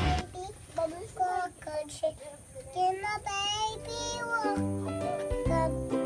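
A young child singing a made-up lullaby about a baby and a chicken in a high, wavering voice. About four and a half seconds in, backing music with low bass notes comes in beneath the singing.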